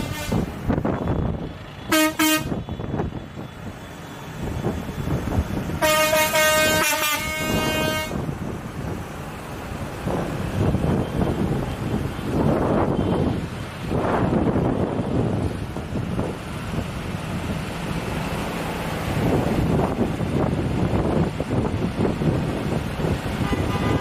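Tractor horns honking, a short blast about two seconds in and a longer one lasting about two seconds around six seconds in, over the steady running of the tractors' diesel engines, which swell as tractors pass close by.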